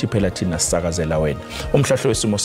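A man speaking over background music with a steady low drone.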